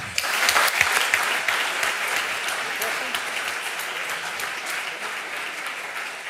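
Audience applauding, starting all at once and loudest in the first second or so, then slowly dying down.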